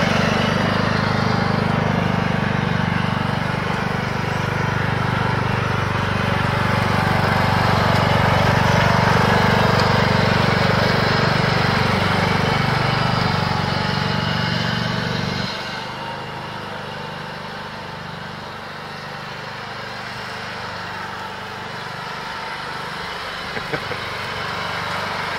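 Ride-on lawn mower engine running steadily as the mower drives across the lawn. About two-thirds of the way through the engine note drops suddenly and stays quieter.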